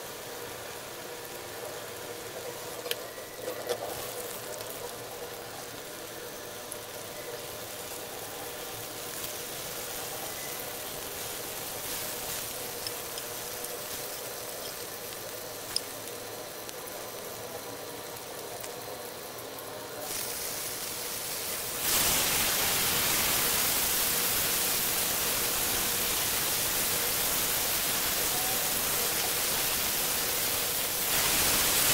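Butter with garlic and ginger sizzling in a hot grill pan, a light frying hiss with a faint steady hum and a few small clicks. About 22 seconds in, the sizzle turns suddenly much louder and stays loud, as raw steak slices go into the hot fat.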